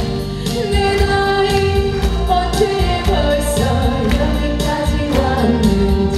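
A woman singing a Korean popular song into a microphone over an accompaniment with a steady beat.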